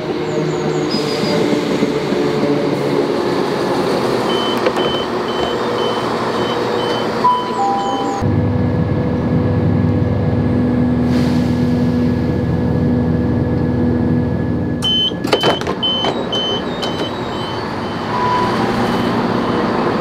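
Class 171 Turbostar diesel multiple unit running at a station, with a run of evenly spaced high beeps like door-warning tones. After about eight seconds it changes to a louder, deeper engine rumble heard from inside the carriage, and near fifteen seconds there are clicks and another run of the same beeps.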